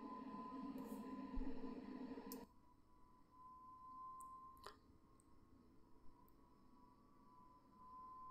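Near silence: faint room tone with a thin steady tone, a low hum that stops about two and a half seconds in, and a single short click past the middle.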